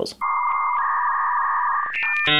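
Synthesized electronic sound effect for a computer buffering: a steady buzzy tone held for about a second and a half, with a thin higher note that steps down partway through, cutting off just before a short higher beep.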